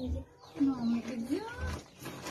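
A woman's drawn-out exclamation "oh", falling and then rising in pitch, with a light rustle of gift wrapping being handled in the second half.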